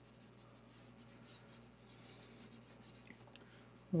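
Faint scratching of a stylus rubbing across a tablet's writing surface in several short strokes, erasing handwritten working.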